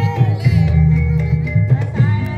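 Javanese kuda lumping (jaranan) dance accompaniment music: hand drums beating under sustained melodic tones, with a wavering melodic line near the start.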